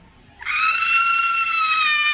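A woman's high-pitched scream, starting about half a second in and held at one steady pitch.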